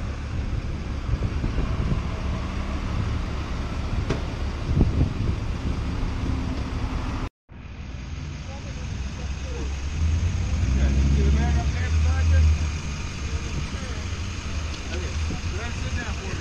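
Downtown street traffic with a vehicle engine running and low wind rumble, and faint indistinct voices. A motor grows louder for a couple of seconds about ten seconds in, and the sound cuts out briefly about seven seconds in.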